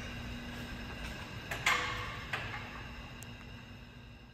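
Repair-shop room tone: a steady low hum with two light clicks, slowly fading out.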